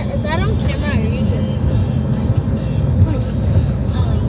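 Car cabin road noise from the back seat of a moving car: a steady low rumble of tyres and engine. A voice-like sound with a bending pitch comes over it in the first second.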